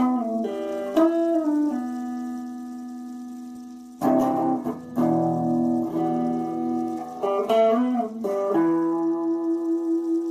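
Electric guitar playing a slow instrumental line of sustained, ringing notes. A long note dies away through the middle before a loud new note is struck about four seconds in, and near the end a held note pulses steadily in level.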